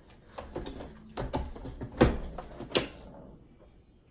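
Hard plastic clicks and knocks as a blender pitcher and its lid are worked onto the base, a handful of sharp ones, with the two loudest about two seconds and nearly three seconds in. The pitcher is not seating properly on the base.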